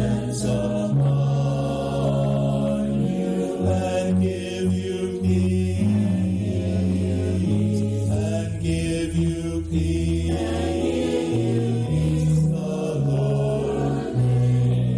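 Mixed church choir of men's and women's voices singing together, several pitches at once, with long low notes held underneath that change every second or two.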